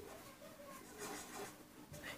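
Faint scratching of a marker pen writing on a whiteboard, in a couple of short strokes.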